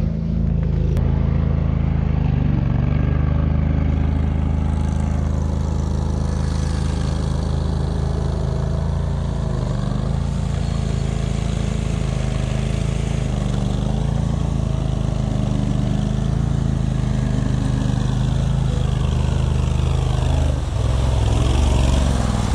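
Argo eight-wheel amphibious ATV's engine running steadily as the machine drives through the pond water. The engine gets slightly louder near the end as the ATV reaches the bank.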